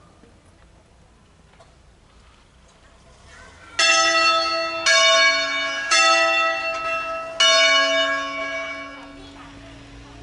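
Swinging church bells from a five-bell ring tuned in A, sounding a funeral ringing. After a lull, four loud strokes come about a second apart from at least two different bells, and each rings on and fades out.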